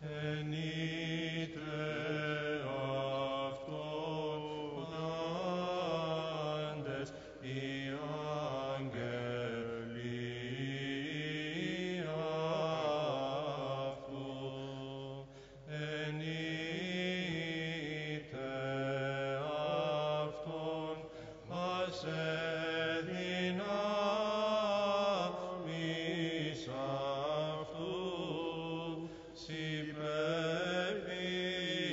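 Orthodox Byzantine chant: a solo or small group of chanters singing a slow, melismatic line with long, ornamented held notes over a continuous low drone, pausing briefly between phrases.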